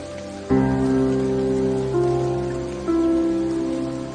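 Soft solo piano playing slow, sustained chords, with new chords struck about half a second in, near two seconds and near three seconds, over a steady bed of rain.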